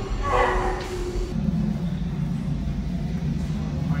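Steady low hum and rumble of a themed spaceship-engine ambience, starting about a second in as the tail of a recorded voice ends.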